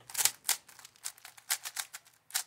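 Plastic 3x3 speed cube being turned by hand: a quick, uneven run of sharp clicks as the layers snap round, mixing up the pieces.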